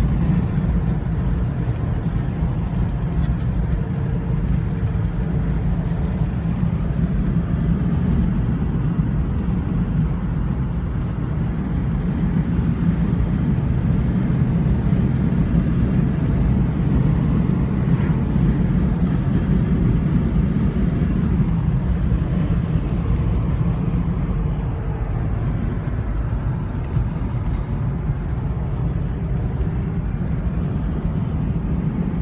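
Steady low rumble of a car travelling along a road, engine and tyre noise heard from inside the cabin.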